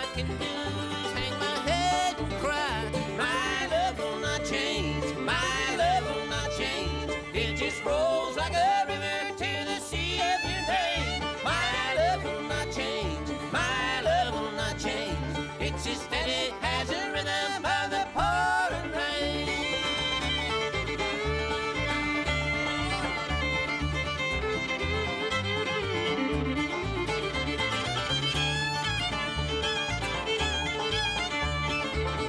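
Bluegrass band playing live: a lead voice sings over acoustic guitar, mandolin, banjo, fiddle and upright bass, with a steady low bass pulse. About two-thirds of the way through the singing stops and the fiddle takes an instrumental break.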